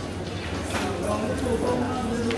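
Background talk among people in a pool hall, with a couple of light knocks about a second in.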